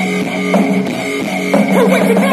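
Live rock band playing loud: guitar and drum kit over steady bass notes.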